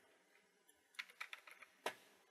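Faint computer keyboard keystrokes: a quick run of about six keys starting about a second in, then one louder key near the end.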